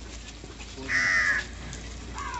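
A crow gives a single caw about a second in, lasting about half a second.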